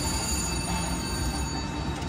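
Electronic reel-spin sounds of a VGT 'Hunt for Neptune's Gold' video slot machine: steady ringing tones that fade out about a second and a half in as the reels come to a stop, over a constant low hum of casino floor noise.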